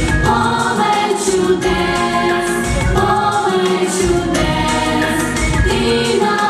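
Children's vocal ensemble singing together into microphones over a pop backing track with a steady beat.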